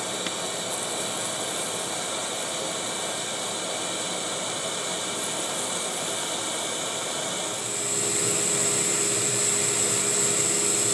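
Hendey metal lathe running under a cut, the tool peeling a continuous curled chip off the spinning workpiece: a steady machine hiss and running noise. A bit past two-thirds of the way in it steps louder, with a high steady whine added as the finish cut runs.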